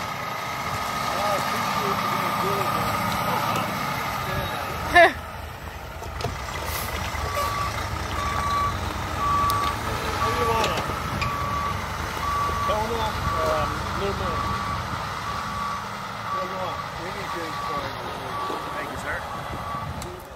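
Heavy side-loader truck reversing on a steep dirt slope. Its diesel engine runs low and steady throughout. From about seven seconds in, its backup alarm sounds evenly spaced beeps, roughly three every two seconds, and a single sharp knock comes about five seconds in.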